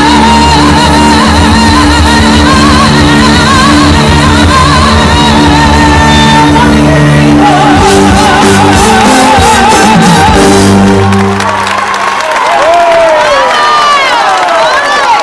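A woman singing live into a microphone over a band, holding long notes with a wide vibrato through the closing bars of a Spanish song. The band stops about eleven seconds in and the crowd starts shouting and cheering near the end.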